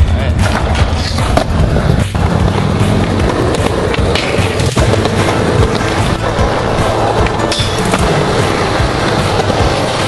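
Skateboard wheels rolling over smooth concrete, under loud, steady music.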